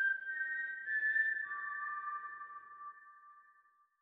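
A closing musical sting of a few high, whistle-like notes, held and overlapping, that steps down in pitch and fades out before the end.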